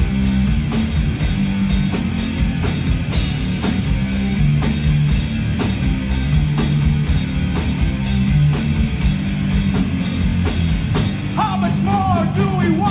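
Live rock band playing an instrumental passage: electric guitar, bass guitar and drum kit with a regular drum beat. A singer's voice comes back in near the end.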